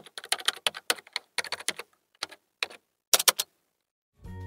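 Typing on a computer keyboard: a couple of dozen sharp keystroke clicks in quick, irregular runs, with a short pause about halfway and a fast run of three near the end.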